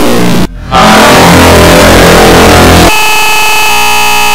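Heavily distorted, effects-processed cartoon audio: a very loud, harsh wall of noise that cuts out briefly about half a second in. It returns as a dense jumble of tones and turns into steady, buzzing held tones near the end.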